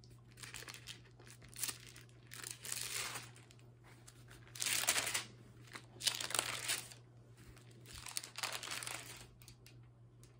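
Thin Bible pages being leafed through and turned: a run of short papery rustles and crinkles, loudest about five seconds in.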